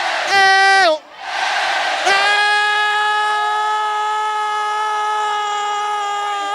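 A man shouts a short "Eo!" into a microphone, falling in pitch at the end, and the crowd cheers. Then, from about two seconds in, he holds one long "Eo" call at a steady pitch.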